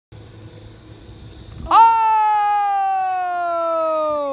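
A child's long, loud yell that starts about one and a half seconds in and is held for nearly three seconds, its pitch sliding slowly down and then falling away at the end.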